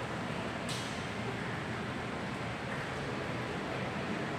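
Steady background noise of a large indoor hall: an even hiss and hum with no distinct events, and one faint click about three-quarters of a second in.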